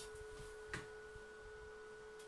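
Faint steady electrical whine, a pure tone, from the idling Einhell inverter stick welder, with one light click about three-quarters of a second in; no arc has been struck yet.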